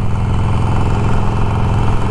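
Cruiser motorcycle engine running steadily while riding at a constant speed, heard from the rider's seat under a steady rush of wind and road noise.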